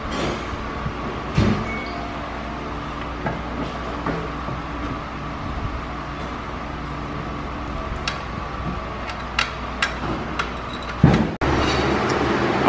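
Light clicks and knocks of a charge pipe and its clamps being handled and fitted onto a supercharger, with a louder knock near the end, over a steady droning hum from the shop.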